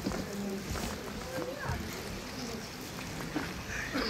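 Quiet hall room tone with faint, scattered voices murmuring in the background and a few soft clicks.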